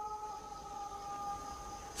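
Faint background drone under a pause in narration: two steady held tones with a light hiss, fading out near the end.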